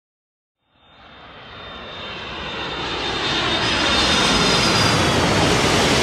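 Airliner engines fading in about a second in and growing steadily louder: a broad rushing noise with a high whine on top.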